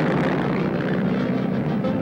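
Cartoon sound effect of an old open-top jalopy's engine running as the car drives off: a dense, steady, loud noise.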